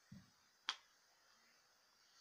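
Near silence, broken by a single short, sharp click less than a second in.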